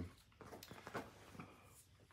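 Faint, scattered small clicks and handling noises from a GoPro Max 360 camera as its battery is pushed into the battery compartment.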